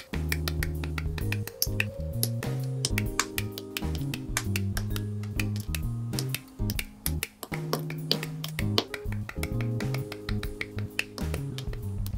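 Side cutters (hobby nippers) snipping plastic parts off grey model-kit runners: many sharp clicks in quick succession, over background music with sustained low notes.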